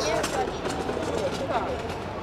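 Busy city street ambience: steady traffic noise from passing cars, with passers-by talking faintly.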